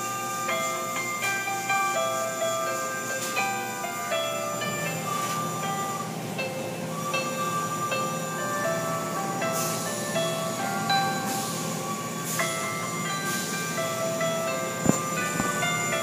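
A chime-like melody of held notes plays over the steady whoosh and rumble of an automatic car wash, its water spray and cloth brushes working over the car. A single thump comes near the end.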